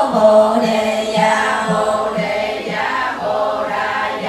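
A congregation of mostly women's voices chanting a Vietnamese Buddhist sutra in unison, with a steady beat about twice a second.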